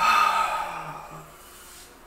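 A man sighing: one breathy exhale that starts loud and fades away over about a second.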